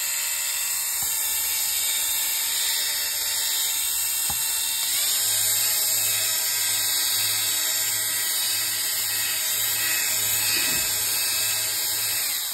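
Rechargeable fabric shaver (lint remover) running: its small electric motor and spinning blades make a loud, steady whir. About four seconds in there is a click and the tone changes, with a faint regular pulsing after it, as the shaver head is run over fabric to cut off pilling.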